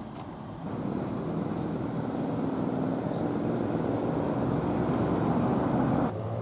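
A car's engine running as it comes along the street, growing steadily louder from about a second in.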